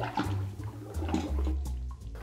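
Apple cider poured into a pint mixing glass over ice, liquid splashing into the glass, the pour thinning to a trickle near the end.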